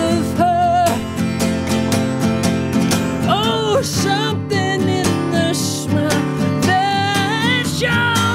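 Steel-string acoustic guitar strummed steadily while a man sings held, wavering notes with vibrato over it.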